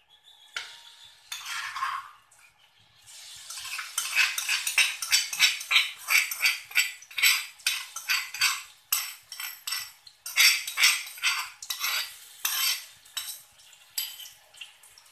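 Pounded chilli sambal paste being scraped out of a stone mortar into an aluminium wok: rapid repeated scrapes and knocks starting about four seconds in.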